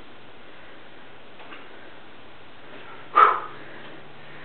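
A single short, sharp grunt of effort about three seconds in, during a one-arm pull-up on a gymnastics ring, over a steady background hiss.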